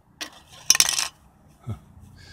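A small click, then a short burst of sharp metallic clinking and rattling about a second in, from an empty steel spray paint can being handled as its ground-through base is worked loose.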